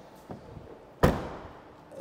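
Tailgate of a 2020 Mini Hatch five-door being shut: a single slam about halfway through, with a short decay.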